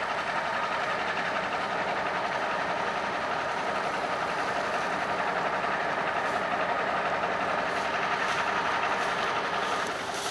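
Semi tractor's diesel engine running steadily as it hauls a building on a house-moving trailer, a continuous even drone.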